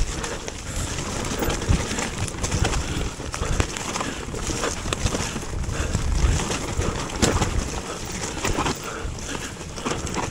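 Mountain bike descending a muddy, rooty trail, heard from a camera mounted on the bike: continuous tyre and bike noise with frequent knocks and rattles over the rough ground, and wind rumbling on the microphone.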